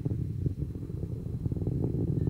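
Low, rough rumble of the Atlas V rocket's RD-180 engine heard from the ground at long range, wavering in strength.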